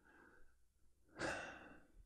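A single breath close to the microphone about a second in, a man drawing or letting out air before he starts singing.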